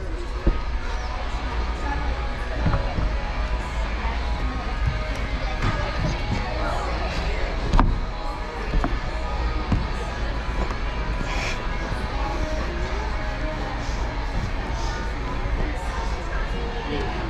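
Indoor climbing-gym ambience: background music playing with people talking in the distance, broken by a few sharp thuds, the loudest about halfway through.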